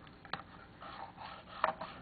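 Faint light scraping and a couple of soft taps of a thin pointer against the wooden valve face of a player-piano air motor.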